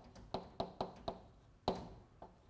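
Chalk tapping and scratching against a blackboard while writing: a series of about six short, sharp taps, the loudest near the end.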